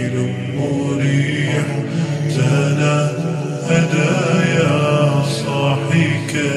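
Arabic nasheed: chant-like vocal music with long held, drawn-out notes over a steady low vocal drone.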